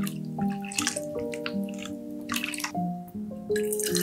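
Milk pouring and splashing into a glass bowl in irregular bursts, then from about three and a half seconds a steady stream of milk pouring into a glass bottle, over background music.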